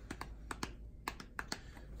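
A string of faint, light clicks and taps, about ten of them, irregularly spaced.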